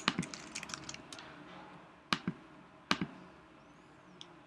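Light clicks from a computer being operated while a web form is edited: a quick run of small clicks in the first second or so, then two single, sharper clicks a little after two and three seconds in.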